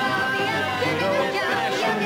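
A young girl singing with a small band of banjo, grand piano and double bass, in an upbeat show-tune style.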